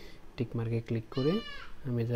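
Only a man's speaking voice, in short low-pitched phrases.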